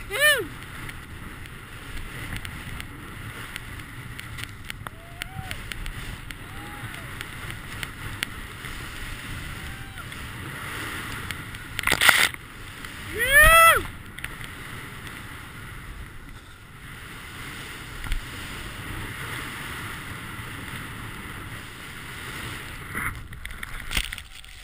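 Snowboard riding through deep powder: a steady rush of wind and snow on a helmet camera. Two loud rising-and-falling whooping yells come right at the start and again about 13 seconds in, just after a brief loud burst of snow spray at about 12 seconds; fainter distant whoops come around 5 to 7 seconds in.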